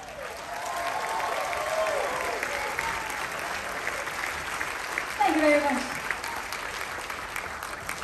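Audience applauding and cheering as the song ends, with a few rising-and-falling whoops in the first couple of seconds and one short shout a little after five seconds in. The applause slowly dies down.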